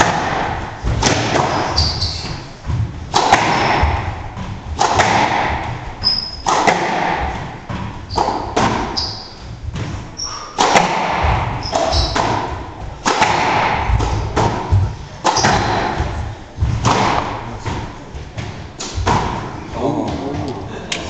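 Squash rally: sharp hits of racquet on ball and ball on the walls of a glass-backed court, about one a second, each echoing in the hall, with short high squeaks of shoes on the wooden floor between them.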